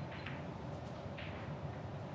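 Heyball balls rolling after a cue strike, with a few faint clicks as the cue ball meets an object ball and the balls touch each other and the cushions, over a steady hall hum.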